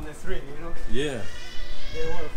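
A person's voice: a rising-and-falling call about a second in, then a high, drawn-out sound in the second half.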